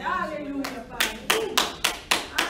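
Hands clapping in a steady rhythm, about three to four claps a second, starting about half a second in. A voice is heard briefly at the start.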